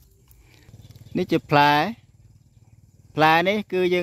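A man speaking Khmer in two short phrases, with a faint low rumble in the pauses between them.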